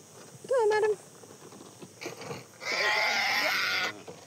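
Agitated African grey parrot giving a loud, harsh, raspy screech that lasts about a second near the end, the sound of a cranky bird being handled. A short sliding call comes about half a second in.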